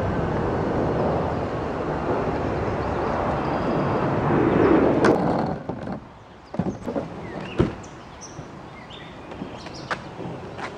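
A steady rushing noise that stops about five and a half seconds in, followed by several knocks and one sharper clunk from the canoe and its PVC wheeled cart bumping against the car's roof as the canoe is pushed up onto it.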